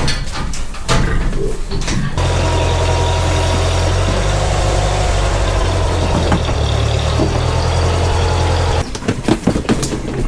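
A few knocks and clatter, then a tractor engine running steadily at a low, even speed for about six seconds, cutting off suddenly shortly before the end.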